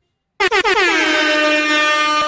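After a brief silent gap, a loud horn-like blast starts about half a second in, sliding down in pitch and then holding one steady tone. It is a transition sound effect at a cut between scenes.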